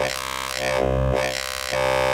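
Serum wavetable synthesizer playing one held note on its "Reesey Mess 1" wavetable, a single-oscillator bass tone rich in harmonics. Its tone shifts partway through and holds steadier near the end.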